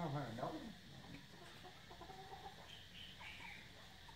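Faint short bird calls, with a brief voice at the very start.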